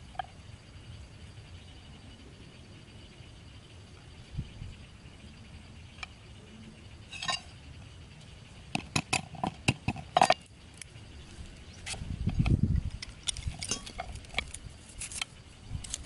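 Knife blade cutting and tapping thin bamboo strips on a wooden chopping board: irregular sharp clicks and knocks, thickest about nine to ten seconds in and again near the end, with a low muffled thump around twelve seconds.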